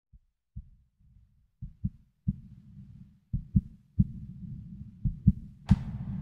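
A heartbeat sound effect opening a song: low thumps, mostly in lub-dub pairs, over a low rumble that grows, coming faster and louder. A sharp hit near the end brings in the music.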